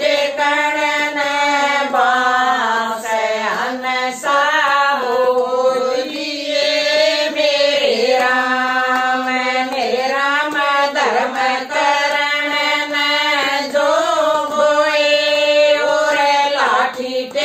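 A group of women singing a Haryanvi devotional folk song (bhajan) together in a chant-like unison, with long held notes that slide between pitches.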